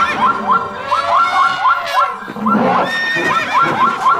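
Horse whinnying twice in a row, each a long call with a fast, quavering pitch.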